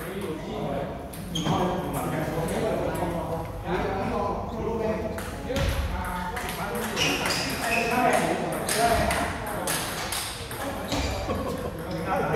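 Table tennis ball being hit back and forth in a rally, sharp repeated clicks of the ball on paddles and the table, with people talking.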